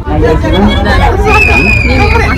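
Several people chattering together inside a ropeway gondola cabin over a steady low rumble, with a thin high tone coming in a little past halfway.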